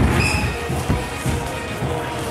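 Music with a steady bass beat playing in a large, echoing sports hall, with a brief high squeak a fraction of a second in.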